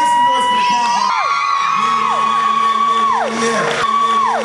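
Several people whooping in long, high held cries that rise, hold and drop away, overlapping one another, with a lower held shout in the middle, over background music.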